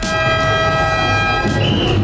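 A horn blown in one long, steady note that lasts about a second and a half, over crowd noise.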